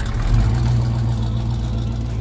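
Car engine and exhaust, a steady low rumble as the car drives slowly away.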